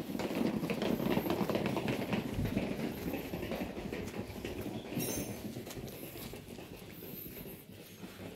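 Wheels of a hard-shell suitcase rolling over a paving-block lane, a dense rattling clatter that is loudest in the first couple of seconds and fades gradually.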